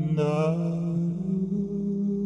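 Looped male chanting in layers: low sustained voices hold a steady drone while a brighter sung note slides upward at the start and fades within a second, and the drone steps up in pitch past the middle.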